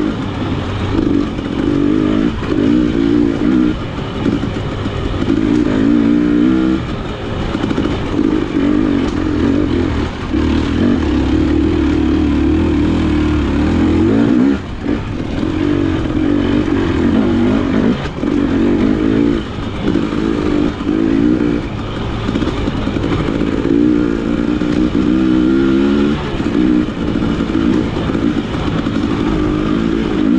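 KTM 300 XC-W two-stroke single-cylinder dirt bike engine, revving up and down as the throttle is worked on and off over the trail. The engine note drops briefly about halfway through, then picks up again.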